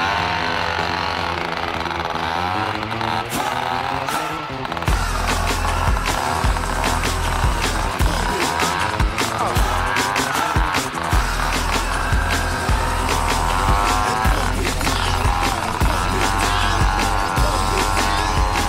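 Moped engine running and revving as it tows a sled through snow, its pitch wavering up and down with the throttle. From about five seconds in, a heavy low rumble, wind buffeting the microphone, joins it.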